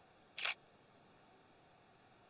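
Nikon D5600 DSLR's shutter firing once: a single short mirror-and-shutter clack about half a second in.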